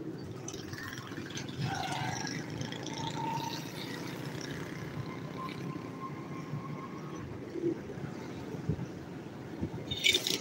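Street traffic and road rumble heard while riding through a city street, with a steady mixed din and a faint drawn-out tone in the middle stretch. A short loud burst comes right at the end.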